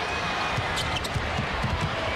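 A basketball being dribbled on a hardwood arena floor, several dull irregular thumps, over steady arena crowd noise, with short sneaker squeaks a little under a second in.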